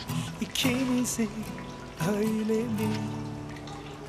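A slow love song: a singer holds long notes between sung lines, over soft instrumental accompaniment.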